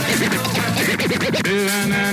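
Music with DJ turntable scratching: quick swooping up-and-down pitch sweeps for about a second and a half, then steady sung or played notes come back in.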